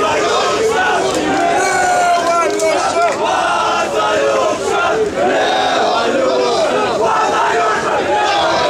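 A large crowd of many voices shouting together, loud and sustained.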